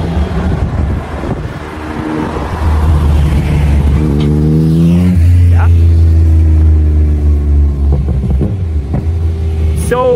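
A motor vehicle's engine pulling away. It builds from about two and a half seconds in and rises in pitch, drops back suddenly at a gear change about five seconds in, then runs steady and loud before easing off near the end.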